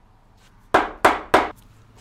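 Three quick strikes of an ash wooden mallet on the end of a paper birch log, seating it on the lathe's drive spur between centers.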